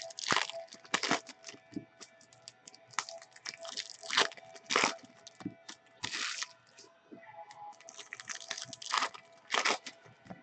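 Trading-card packs being torn open and the cards handled: irregular short bursts of wrapper tearing and crinkling and cards rustling. Faint background music runs underneath.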